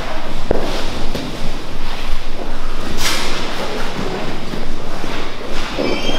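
Grappling on gym mats: gi fabric rubbing and bodies shifting and scuffing against the mat, with a sharp slap about three seconds in.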